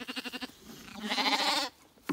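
Zwartbles sheep bleating: a short quavering bleat, then a longer, louder one that stops a little before the end.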